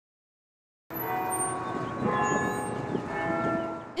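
Tower bells chiming, several ringing tones overlapping and fading, starting about a second in.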